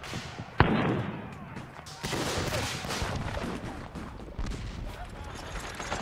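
Black-powder musket fire in battle: one sharp, loud shot about half a second in, then a continuing rattle of scattered firing, with men's voices faintly shouting.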